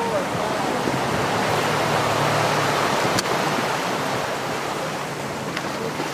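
Steady rushing noise of sea water and wind, with a faint low hum between about one and three seconds in and two sharp clicks.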